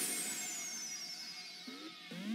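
A falling electronic whoosh in the dance routine's music track: a noisy sweep with a thin tone gliding steadily downward, loudest at the start and fading out, as a break between sections of the music.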